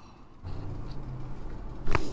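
Low steady hum, then a single sharp crack near the end: a neck joint cavitating as a chiropractor adjusts the neck of a seated patient.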